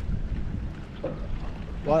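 Low, uneven wind rumble on the microphone, with a voice starting near the end.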